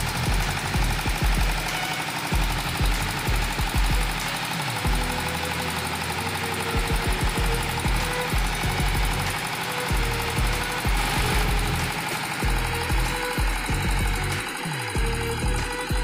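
A drilling rig's diesel engine runs steadily with a fast, even knocking beat. It is driving the rig's hydraulics while the drilling tower frame is raised.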